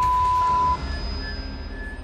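A steady 1 kHz censor bleep masks a swear word and cuts off sharply under a second in. After it come a low rumble and faint held musical tones.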